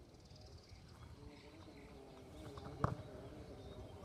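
Faint outdoor background on a football pitch, with a single dull thump about three seconds in.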